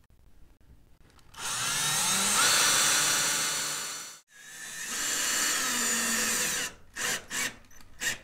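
Cordless drill driving screws through small footholds into a climbing wall: two runs of about two and a half seconds each, split by a brief break about four seconds in. A few short clicks follow near the end.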